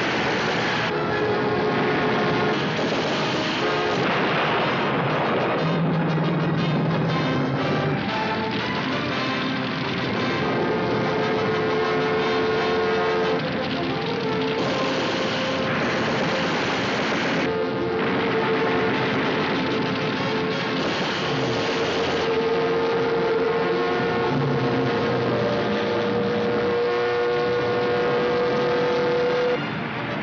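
War-film battle soundtrack: a dramatic orchestral score with long held notes, mixed with the drone of aircraft engines and the fire of a four-barrelled anti-aircraft gun.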